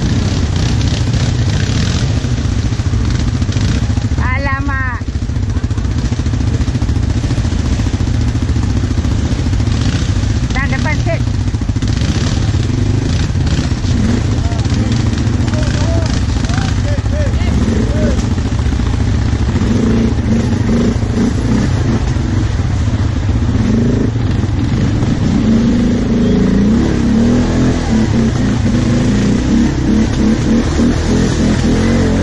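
ATV engines running steadily as quad bikes crawl along a muddy trail. A brief wavering call rises above the engine noise about four seconds in and again about eleven seconds in.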